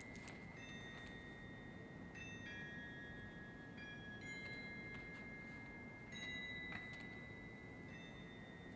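Crotales struck softly one at a time: high, bell-like notes that ring on for several seconds and overlap. There are about six strikes, a second or two apart.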